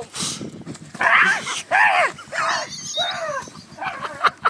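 A man's loud yelps, about four in a row, after a short burst of scuffling and rustling in dry brush as he goes to the ground.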